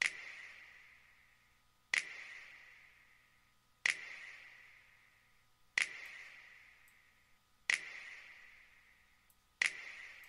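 A finger-snap sample from a beat, playing on its own with a sharp hit about every two seconds, once per bar at 125 BPM, six times in all. Each hit dies away in a long reverb tail. It is running through FL Studio's Fruity Compressor set to a hard knee while the compressor's threshold is being set.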